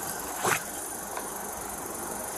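Car engine idling steadily, with a brief sharp sound about half a second in.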